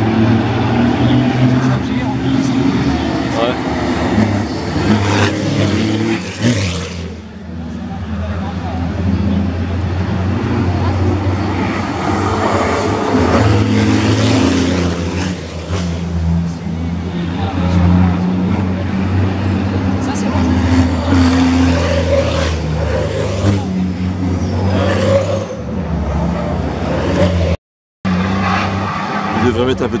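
Racing trucks' diesel engines running hard as they pass on the circuit, a steady low engine note that rises and falls as the trucks come and go. The sound cuts out briefly near the end.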